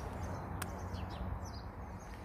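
Outdoor ambience of small birds chirping faintly over a steady low rumble, with a single sharp click a little after the start.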